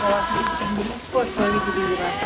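Indistinct voices of several people talking, with steady held tones of background music behind them and a brief dip about a second in.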